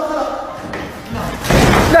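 A sudden loud bang about one and a half seconds in, lasting about half a second, with a man shouting "no" as it dies away.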